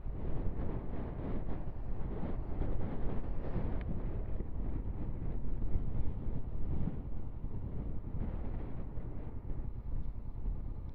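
Strong wind buffeting the rider's helmet or bike microphone, with a motorcycle engine running underneath as the bike moves slowly.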